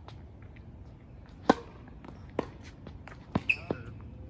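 Tennis ball being struck by rackets and bouncing on a hard court during a rally. These are sharp single pops, the loudest about one and a half seconds in, another a second later, and two close together near the end.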